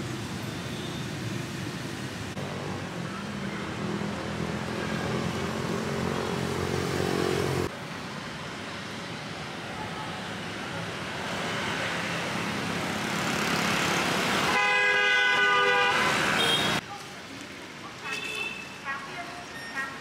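City street ambience of passing motorbike and car traffic, joined across several shots. Near the end a vehicle horn sounds loudly for about two seconds and cuts off.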